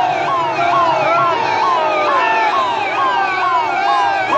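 Several electronic sirens sounding at once, each repeating a quick falling sweep about twice a second. Together they overlap into a continuous wail.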